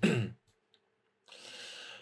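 A speaker's breathing between sentences: a short voiced sigh that falls in pitch at the start, a pause, then a hissy in-breath near the end.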